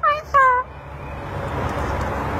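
African grey parrot answering into a microphone with two short, high, voice-like syllables in quick succession, each falling slightly in pitch.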